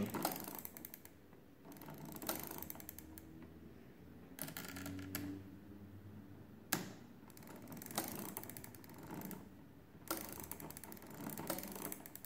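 A 145-year-old Thomas de Colmar arithmometer's brass mechanism clicking as its crank handle is turned and its setting sliders are moved through their detents. The ticks come in several short clusters, with one lone click about seven seconds in.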